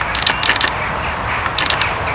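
Parakeets calling: harsh, grating chatter in two short bursts, one near the start and one near the end.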